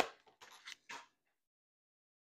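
Tarot cards being shuffled in the hands: a few quick scraping strokes in the first second, then it stops.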